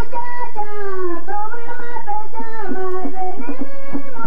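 A woman singing a tambora song alone in long, held notes that glide from pitch to pitch, with a few short drum strokes coming in near the end.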